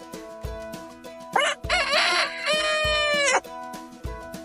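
A rooster crowing once, a little over a second in, lasting about two seconds and ending in a long held note that cuts off sharply, over background music with a steady beat.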